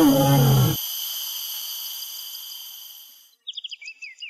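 A male lion roaring at night, one call about a second long that falls in pitch, over a steady high chirring of night insects. The insects fade out about three seconds in, and a bird then calls in a quick series of short falling notes near the end.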